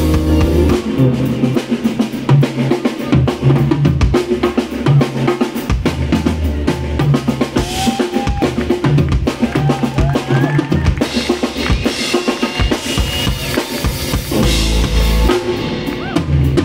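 Live rock band playing a drum-driven instrumental passage: busy drum kit with kick, snare and rimshots over bass and keyboards, with a few short sliding lead notes in the middle.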